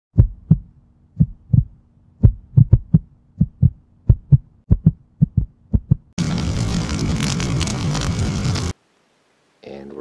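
Intro sound effects: a run of short low thumps, mostly in pairs, over a faint hum, then a loud burst of hissing noise for about two and a half seconds that cuts off suddenly.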